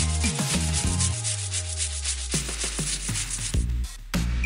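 Aerosol freeze spray hissing steadily onto a laptop logic board, cutting off sharply shortly before the end, over electronic background music with a bass sweep falling in pitch.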